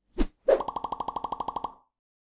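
Logo-animation sound effect: two quick pops, then a fast fluttering run of pitched pulses, about thirteen a second, that fades away shortly before the end.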